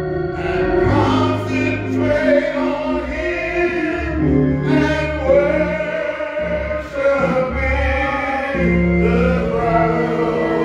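A man singing a gospel song through a microphone in long, held notes, over sustained organ chords that shift every second or so.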